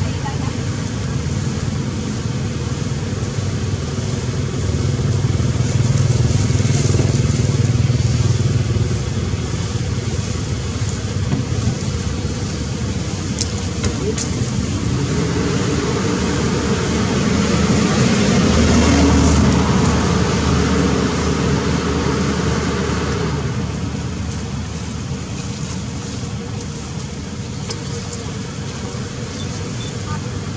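A low rumble of passing motor vehicles that swells twice, with faint voices beneath it.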